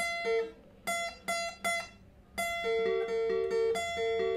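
Steel-string acoustic guitar, tuned a quarter step down, playing a single-note riff high on the neck across the high E, B and G strings. A few separate plucked notes ring out first, then after a short pause about halfway in the notes run on in a continuous repeating pattern.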